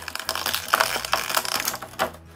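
Clear thermoformed plastic blister tray crackling and crinkling as it is bent and handled, a dense run of sharp crackles that stops abruptly near the end.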